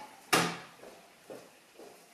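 A single sharp knock of a plastic jug against a ceramic plate about a third of a second in, fading quickly, followed by a couple of faint small taps and rustles.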